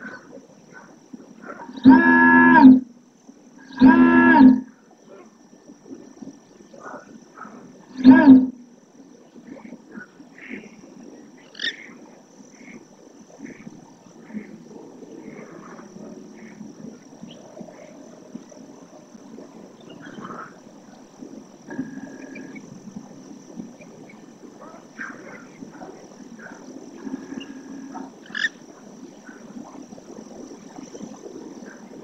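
Three loud, drawn-out animal calls, each under a second long: two about two seconds apart, a third about four seconds later. Fainter short calls and low background noise follow.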